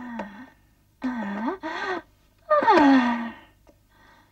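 A woman moaning in three drawn-out cries, the last and loudest sliding down in pitch.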